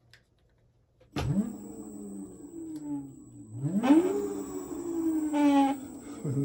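Kaabo 1100 W electric hub motor spinning up unloaded under throttle, driven by a Ninebot Max G30D controller fed 65 V: a whine starts suddenly about a second in and rises, then rises again higher near the middle and eases slowly down while held, with a thin high steady tone throughout. The controller is running the motor without faults.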